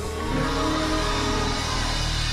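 Live gospel quartet band music between sung lines: a held chord of several steady notes over a steady bass line.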